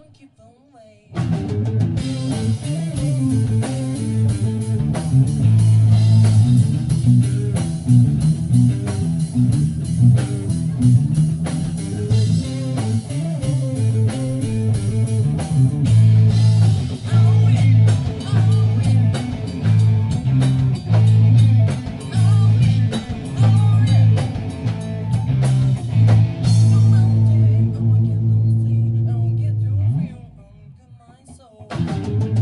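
A live blues-rock band playing: electric guitar over a pulsing bass line and a drum kit. It comes in after a brief gap about a second in.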